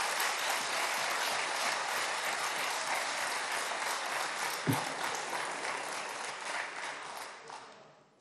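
Members of parliament applauding, a steady clapping that dies away near the end.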